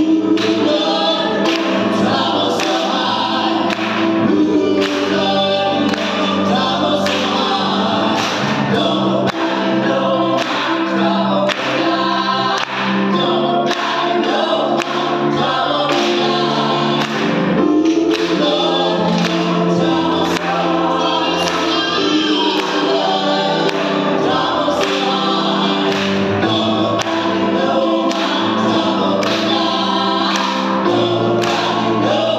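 Gospel vocal trio of two women and a man singing in harmony, live in a reverberant church, over a steady beat.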